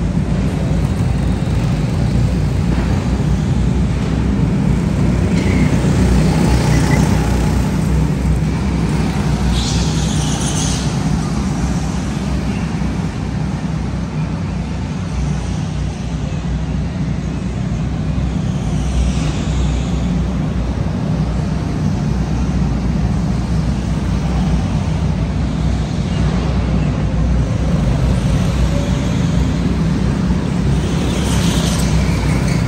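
Go-kart running around an indoor track, heard from on board: a steady, loud motor and tyre drone with no let-up.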